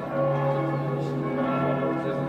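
Church bells of the Heiliggeistkirche ringing: several bells of different pitches sound together in a steady peal, their tones overlapping and hanging on.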